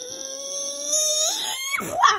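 A young child's voice holding one long wordless note, steady at first, then rising in pitch about two-thirds of the way through before breaking off.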